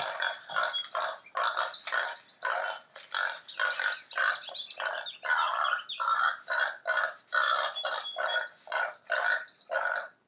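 The small built-in electronic speaker of a sound-button board book playing its short recorded clip after the button is pressed, a tinny tune in short pulses about two or three a second. It cuts off at the end of the clip.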